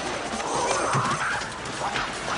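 People shouting and screaming in a crowd brawl, over a steady hubbub. A loud yell that rises and falls in pitch comes about half a second in.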